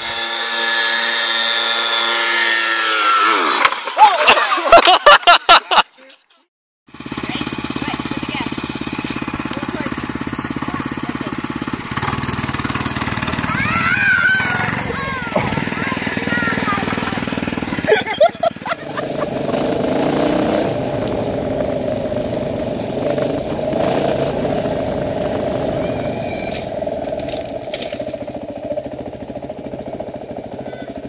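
Small motorcycle and mini bike engines running, heard in several short stretches: an engine note falling in pitch over the first few seconds, then a run of sharp knocks, a moment of silence, engine noise with children's voices, and a steadier engine hum through the last third.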